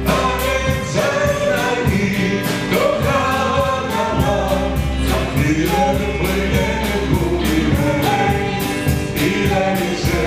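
A small band playing live with a woman singing lead: drum kit keeping a steady beat under electric guitar and keyboard.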